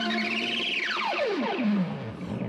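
A live rock song drops to a single wavering electronic tone that climbs briefly and then dives steeply down in pitch to a low note near the end, with no drums under it.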